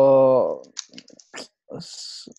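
A person's drawn-out hesitation sound, a held vowel falling slightly in pitch, fading out about half a second in. Then a few soft clicks and a short breathy hiss near the end.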